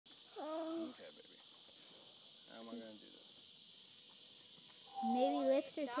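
A person's voice making three short exclamations without clear words, the last and loudest near the end, over a steady high hiss.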